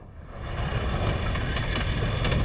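A low rumbling noise that swells steadily louder, like a trailer sound-effect riser building tension.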